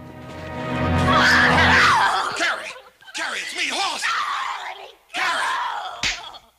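A woman screaming and crying out as she struggles against a man holding her: one loud scream in the first couple of seconds, then two more stretches of cries. Background music plays under the start and fades out about two seconds in.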